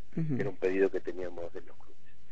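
Speech only: a man talking in Spanish, with a short pause near the end.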